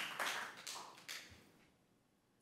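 A few people clapping, with scattered claps that die away about a second and a half in.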